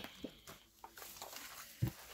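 Faint handling of loose paper planner pages lifted free of the binder rings, with a few small clicks and a short soft tap near the end as the pages are set down on the table.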